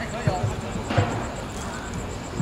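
Faint voices in the background, with two dull thumps, one about a quarter second in and a louder one about a second in.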